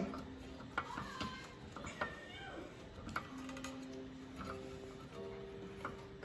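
Faint light clicks and taps of a small-engine carburetor and its metal linkage being handled and fitted back onto the engine, with a few faint held tones in the background.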